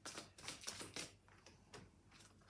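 Hand-shuffling of a deck of oracle cards: a rapid series of light card clicks for about a second, then a few fainter ones.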